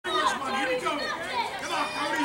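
Several people's voices talking at once in overlapping chatter, with no single clear speaker.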